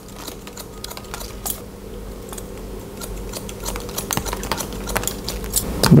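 Barber's scissors snipping wet hair: quick, irregular clicking cuts that come thicker in the second half.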